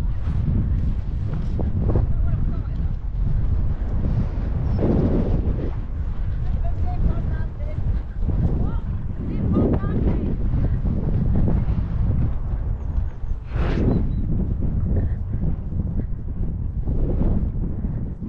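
Wind buffeting a helmet-mounted microphone in a steady low rumble, with a few faint distant voices now and then.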